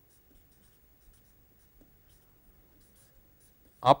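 Felt-tip permanent marker writing letters on paper: faint, short scratchy strokes spaced irregularly.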